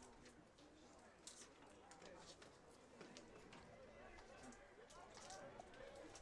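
Near silence: faint, distant voices carrying across an outdoor ballfield, with a few soft clicks.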